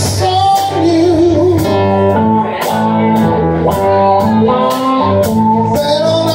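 A live blues-rock band playing: an electric guitar plays held, wavering lead notes over sustained keyboard chords. Drums keep an even beat on the cymbals.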